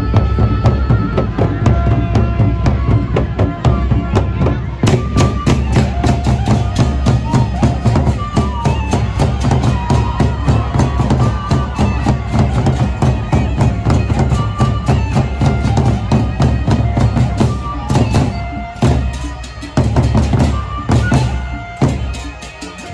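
Sasak gendang beleq ensemble playing: large double-headed barrel drums are beaten with sticks in a fast, dense rhythm, with cymbals clashing and a sustained melody line above.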